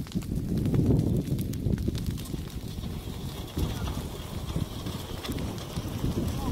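Burning reeds and dry brush crackling, with irregular small pops and clicks, over a steady rumble of wind buffeting the microphone.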